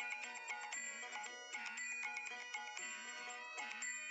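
Quiet background music: a melody of short, separate notes.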